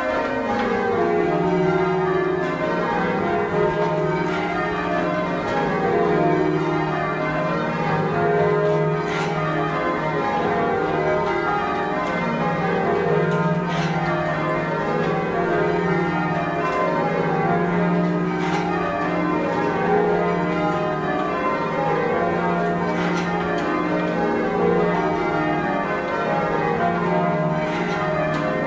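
Cathedral tower bells being change rung, heard from the ringing chamber below: a steady sequence of strikes that falls from high to low in repeated descending runs, each bell ringing on over the next.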